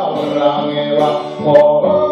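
A man singing a song in long held notes, accompanying himself on an acoustic guitar.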